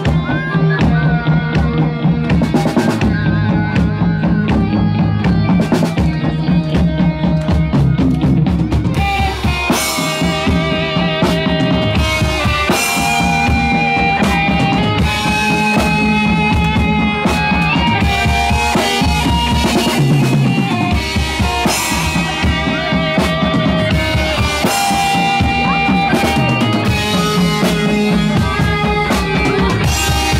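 Live rock band playing: electric guitar over a drum kit with kick, snare and cymbals. The drumming grows brighter and busier about nine seconds in.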